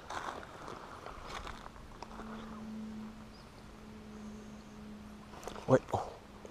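Shimano Rarenium 1000 spinning reel being wound on a lure retrieve, a faint, even low hum that starts about a second and a half in.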